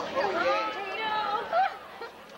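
Students' voices chattering as they walk past, with a short louder voice about one and a half seconds in.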